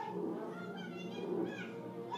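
Animated film soundtrack: a cartoon cat meowing a few times with wavering pitch over orchestral background music.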